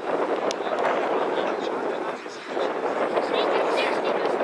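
Indistinct shouting and calling from rugby league players and spectators out on the pitch, with no clear words, going on throughout and with a few higher calls near the end.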